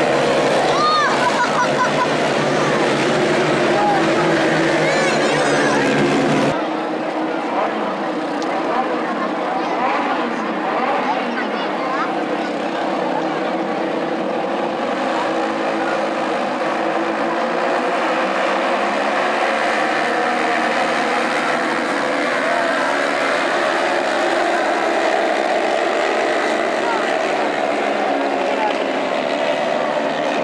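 A field of midget race cars running together on a dirt oval: many small engines revving and droning at once, their pitches wavering up and down as the cars circulate.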